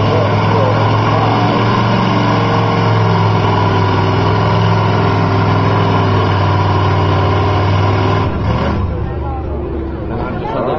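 1983 Ford pickup's engine running at steady high load as the truck bogs down in deep mud, wheels spinning, then dropping away about eight seconds in.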